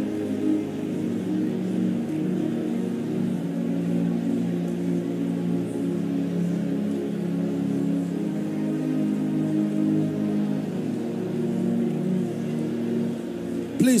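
Slow ambient keyboard pad music with long held low chords, steady through the pause.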